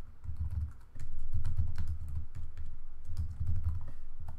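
Typing on a computer keyboard: several quick runs of muffled keystrokes with short pauses between them.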